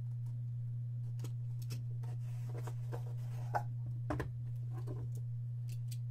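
A sealed cardboard trading-card box being cut open with a blade and handled: scattered light scrapes, taps and rustles, with a couple of sharper knocks about three and a half and four seconds in. A steady low hum runs underneath.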